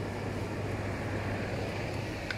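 A steady low mechanical hum under an even background hiss.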